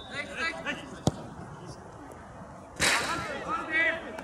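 A football being struck hard once, a single sharp thud as the free kick is taken about a second in. Near the end comes a sudden loud burst of noise, followed by men shouting on the pitch.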